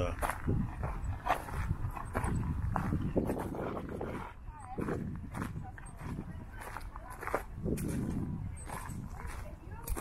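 Wind rumbling on the microphone, with other people talking nearby and footsteps on desert gravel.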